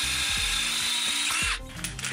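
Brushless cordless drill running a twist bit through a titanium scooter handlebar tube, a steady high whir of the bit cutting metal while the hole is enlarged step by step toward a quarter inch. The drilling stops about one and a half seconds in.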